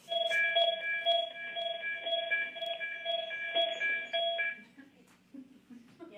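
Electronic chime over the meeting's teleconference line: a steady electronic chord of several tones pulsing about twice a second, stopping about four and a half seconds in.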